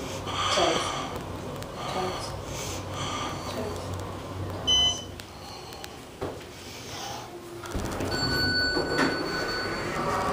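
Inside a 1976 Otis Series 5 hydraulic elevator car: a short high beep about halfway through, then a few seconds from the end a steady low hum with a faint high whine starts as the elevator runs.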